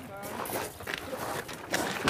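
Footsteps on a gravel path, uneven and irregular, with a louder burst of noise near the end.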